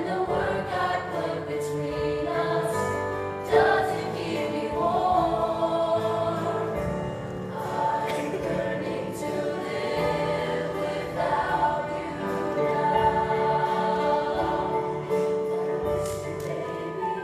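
Mixed-voice choir of women and men singing, holding long chords that change every few seconds.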